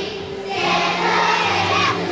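A children's choir singing together in unison, the voices getting louder about half a second in.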